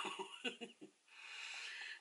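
A woman drawing an audible breath in through the mouth for about a second, just before she speaks again, after a few faint voice sounds in the first half.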